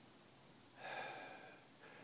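A faint breath or exhale from a man close to the microphone, about a second in, in near silence.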